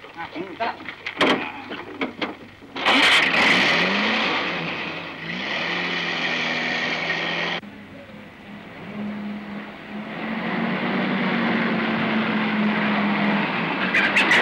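Old jeep engine starting and revving up, cut off abruptly at a scene change, then running steadily and growing louder as the jeep drives closer.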